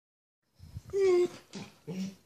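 A dog whining: a steady, high whine about a second in, the loudest sound, then a shorter, lower whine near the end.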